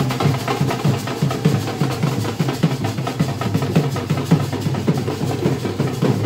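Drum-led music with a quick, steady beat of low drum strikes.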